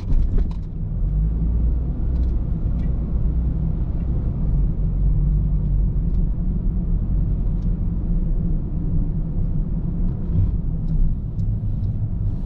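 Steady low rumble of a car's engine and tyres heard from inside the cabin while driving slowly, with a few faint ticks scattered through it.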